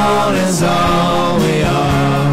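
Live rock band playing: electric guitars, bass guitar and drums, with held chords over a steady drum beat.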